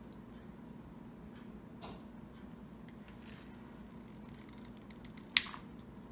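Wire cutters snipping off the excess end of a guitar string: one sharp snap about five seconds in, after a fainter click near two seconds, over faint room hum.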